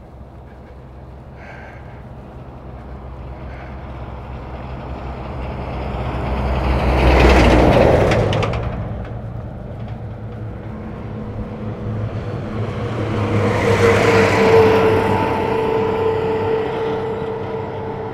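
Two road vehicles passing one after the other on an asphalt highway: the first swells gradually to a peak about seven seconds in and then fades quickly; the second peaks about fourteen seconds in, with a steady hum lingering after it to the end.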